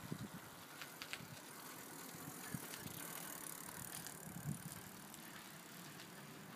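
A child's bicycle being ridden on tarmac, heard faintly, with a few light clicks.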